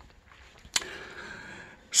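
A man draws a breath in for about a second, starting with a small mouth click about three quarters of a second in.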